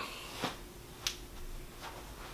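Quiet room tone with a faint steady hum, broken by one short, sharp click about a second in.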